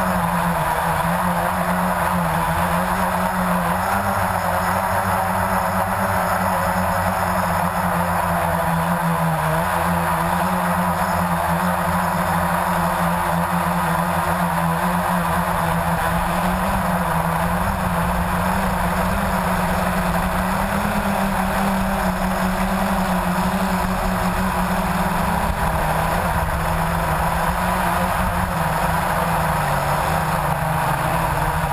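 Blade 350QX quadcopter's brushless motors and propellers running steadily in flight, recorded close by the on-board camera: a loud, steady hum whose pitch wavers slightly as the throttle changes.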